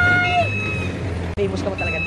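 Small diesel dump truck driving past and away, its engine a steady low hum that fades near the end. A loud, high, steady held tone cuts off about half a second in.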